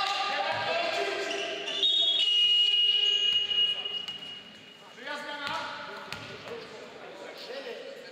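A steady high-pitched signal tone, about a second and a half long, in a basketball hall, with players' voices calling before and after it.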